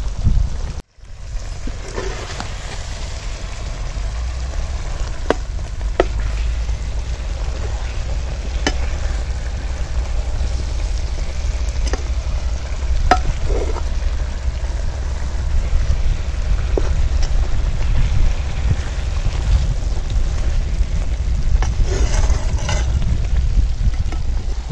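Chicken pieces frying in masala gravy in a clay pot: a steady sizzle, with a few sharp clicks of a metal ladle against the pot.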